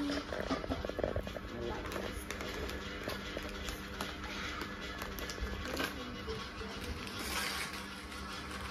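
Gift-wrapping paper crinkling and tearing as a present is unwrapped by hand, many small crackles, over quiet background music.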